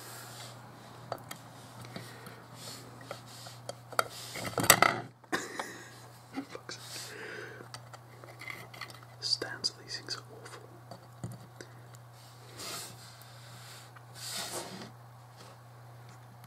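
Model starship and its display stand being handled and fitted together close to the microphone: small scattered clicks and taps, with a louder clatter about four and a half seconds in. A steady low hum runs underneath.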